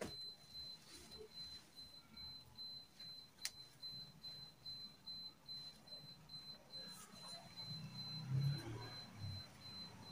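Quiet room with faint rustling of a sequined lace gown being handled, over a steady faint high-pitched whine. A single sharp click about three and a half seconds in, and slightly louder handling near the end.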